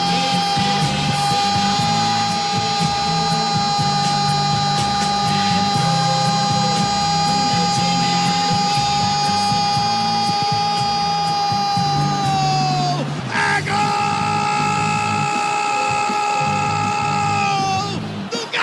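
Brazilian football commentator's drawn-out 'gooooool!' goal cry, held on one high pitch for about thirteen seconds. After a quick breath comes a second held 'é gooool', which falls in pitch at the end.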